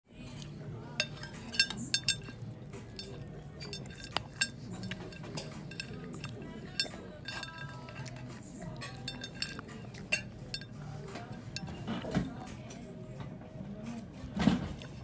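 Cutlery and dishes clinking: frequent sharp, briefly ringing clinks of metal on china and glass, over a low steady murmur of background voices.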